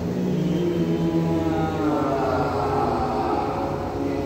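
Several voices holding long, steady vocal tones together in a voice warm-up exercise, at a few different pitches. One low tone holds steady for the first couple of seconds while higher voices slowly slide in pitch.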